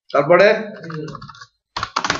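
A person's voice speaking briefly, then a quick run of keystrokes on a computer keyboard near the end.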